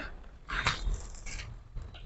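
Black plastic garbage bag rustling as it is handled: a few short, quiet rustles.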